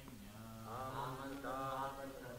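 Voices chanting a Sanskrit verse in a slow, measured recitation. The chanting grows louder a little over half a second in.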